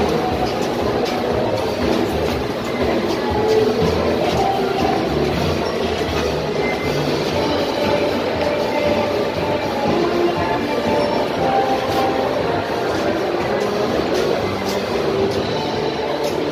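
Steady rumbling background noise of a busy indoor public space, with music playing over it.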